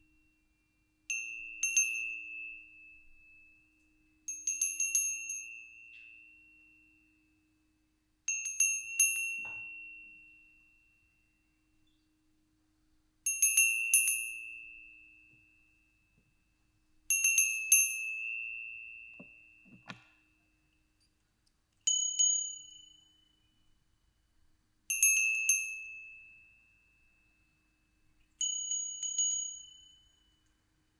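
Small hand bells rung one at a time: about eight clear, high rings, each jangling briefly and then fading over a second or two. Two of the rings, near the end, are a little higher in pitch than the rest.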